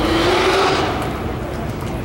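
A car driving past, its engine and tyre noise swelling to a peak about half a second in and fading away over the next second.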